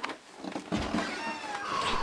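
A door creaking as it is pushed open: a thin, wavering squeak that starts about a second in and draws out near the end.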